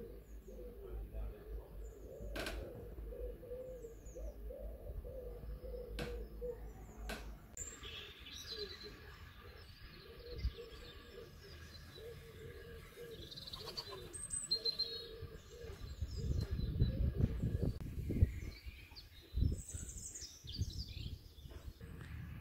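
Faint woodland birdsong: a pigeon cooing over and over, with small birds chirping higher up. A few sharp knocks early on, and low rumbling bursts a few seconds before the end.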